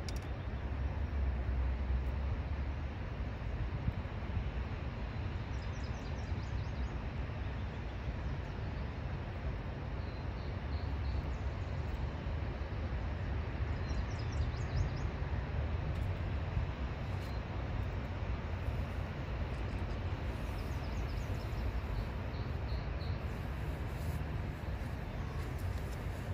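Steady outdoor background rumble and hiss at a riverside, with a small bird chirping faintly in short bursts several times.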